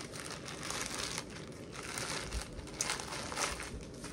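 Plastic packaging crinkling irregularly as it is handled in the hands.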